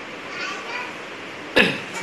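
A single loud cough about one and a half seconds in, sharp at the start and trailing off in falling pitch, with faint voices before it.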